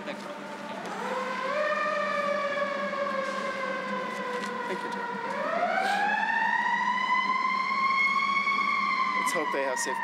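Emergency vehicle siren passing in the street, wailing: its pitch rises about a second in and slowly sinks, then rises again for a longer, higher sweep that peaks near the end and begins to fall.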